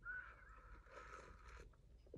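A faint slurp as a hot drink is sipped from a glass mug, air drawn in through the lips for about a second.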